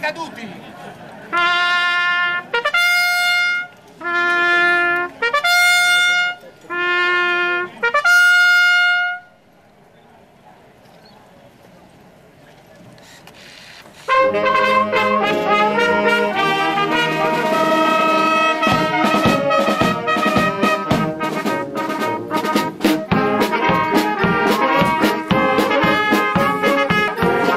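A solo trumpet sounds a ceremonial call of about six held notes. After a few seconds' pause, a brass band starts playing, with drums joining a few seconds later.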